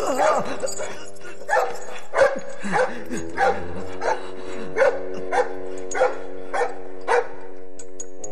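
A dog barking about ten times in a steady rhythm, roughly one bark every two-thirds of a second, over sustained orchestral film music.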